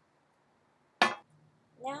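A glass beer glass set down on a table: one sharp clink about a second in, ringing briefly.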